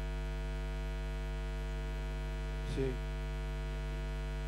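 Steady low electrical mains hum with many overtones in the audio feed, at a time when the sound is out. A brief voice-like sound comes about three quarters of the way in.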